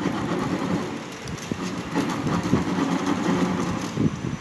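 Copper magnet wire rustling and scraping as hands push coil turns into the slots of a pump motor's steel stator, over a steady low mechanical rumble.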